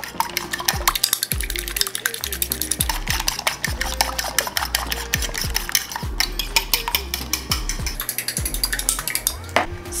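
Eggs being beaten with a fork in a white dish: a rapid, continuous clicking of the fork against the dish.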